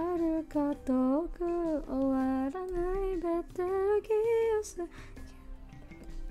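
A woman singing a tune in a string of short, gliding notes, breaking off about five seconds in, over quiet background music.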